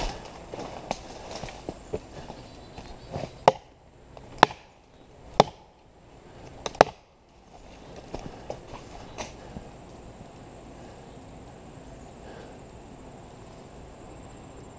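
Felling wedge being hammered into the cut at the base of a large dead oak: four sharp, heavy strikes about a second apart, each led by a short rush of the swing, after a few lighter knocks.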